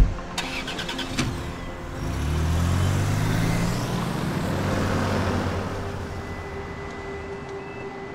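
A sharp thump at the very start, then a car engine pulling away, its note rising for a couple of seconds and fading out.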